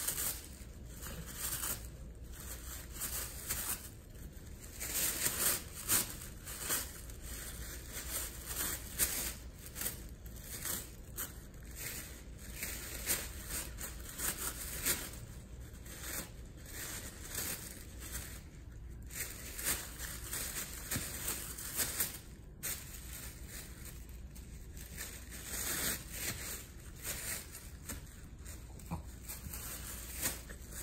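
A Shih Tzu tearing and chewing a sheet of thin tissue paper with her teeth: irregular paper rustling, crinkling and ripping throughout.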